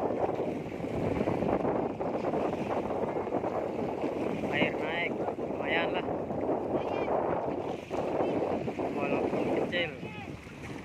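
Wind buffeting the microphone, a steady loud rushing, with a few short voice sounds in the second half.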